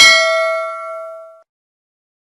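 Notification-bell sound effect: a single bright bell ding with several ringing tones, fading out over about a second and a half.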